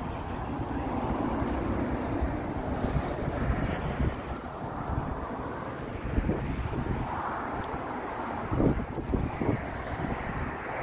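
Wind buffeting the microphone: a steady low rush, with a few stronger gusts in the second half.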